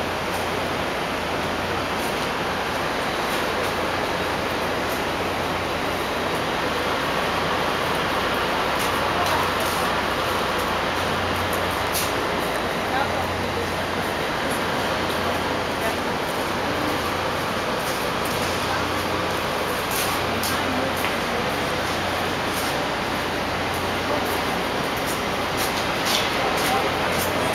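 Steady city street noise with people talking indistinctly in the background and a few faint clicks.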